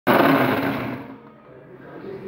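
Electric mixer grinder (Preethi Zodiac) running as it grinds fried onions into a paste: a motor whine that starts abruptly and loud, fades over about a second, then picks up a little near the end.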